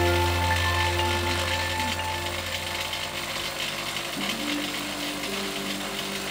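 Bench grinder running with a polishing wheel spinning on its shaft, a steady mechanical whir, with background music over it.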